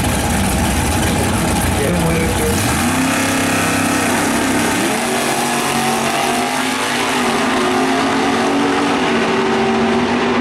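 Two drag-racing cars launching side by side and accelerating hard down the strip. A heavy low roar fills the first couple of seconds, then the engine notes climb in pitch as the cars pull away, with a drop like a gear change about five seconds in.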